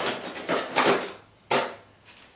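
Objects being handled and shifted on a cluttered studio table while someone rummages for a small tool: scraping and rustling for the first second, then one sharp knock about one and a half seconds in.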